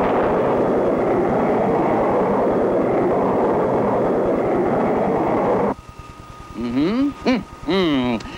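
Spaceship rocket-engine sound effect for a takeoff: a steady noisy rush that cuts off suddenly about six seconds in.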